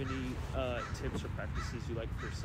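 Faint, off-microphone speech of a person asking a question.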